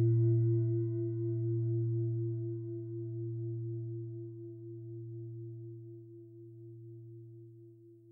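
A singing bowl ringing out after a single strike, its deep tone and higher overtones wavering slightly as they slowly fade away.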